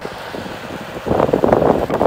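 Wind buffeting the microphone, a rough rushing noise that grows much louder and gustier about a second in.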